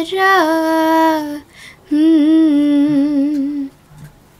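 A young girl singing solo with no accompaniment: two long held phrases with a short breath between, the second wavering in pitch.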